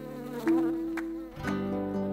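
Honeybees buzzing around a hanging hive: a steady droning buzz that shifts in pitch a few times.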